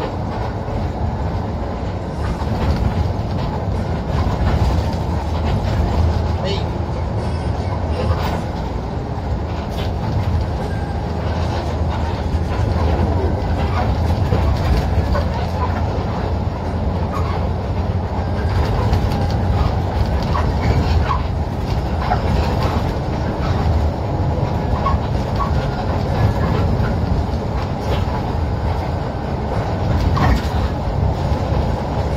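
Cabin noise of an intercity coach on the move: a steady engine and road rumble, with scattered short clicks.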